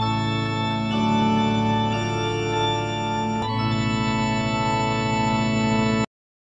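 Sustained organ chords, the chord shifting about a second in, again about two seconds in and again about three and a half seconds in, then stopping abruptly.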